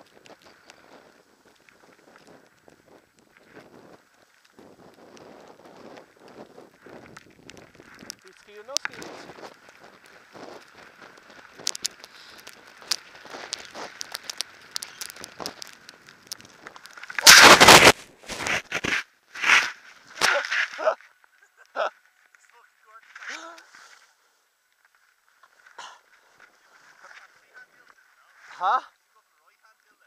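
Skis sliding over fresh snow, heard from a helmet-mounted camera: a faint scraping hiss that grows busier about nine seconds in. A loud rushing burst comes just past the middle, followed by a few shorter bursts, then quieter patches.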